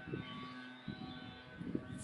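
Faint steady background hum, with a soft click a little under a second in and another near the end.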